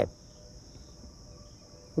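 Faint, steady, high-pitched trilling of an insect chorus, unbroken throughout.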